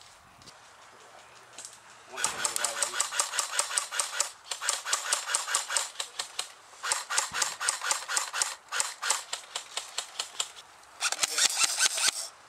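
Airsoft electric rifles firing long full-auto strings, a fast mechanical rattle of rapid clicks, starting about two seconds in and coming in several bursts with short pauses between them.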